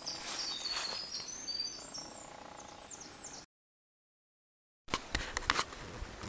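Small songbirds singing quick, high notes over quiet forest ambience, with a few light rustles. About three and a half seconds in, the sound cuts to dead silence at an edit for over a second, then comes back with clicks and rustling from handling.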